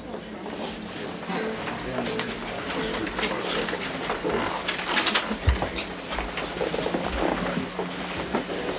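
Quiet murmur of people talking in a small room while a handheld microphone is passed from one person to another, with a few low handling bumps, the clearest about five and a half seconds in, over a steady low hum.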